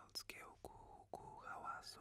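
Faint whispering voice, breathy and unpitched, with a few sharp clicks.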